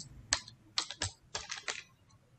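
Typing on a computer keyboard: a quick, uneven run of about seven or eight keystrokes.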